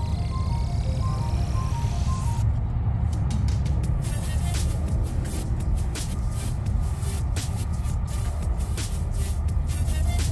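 Background music with heavy bass: a short run of melody notes, then a steady beat from about four seconds in.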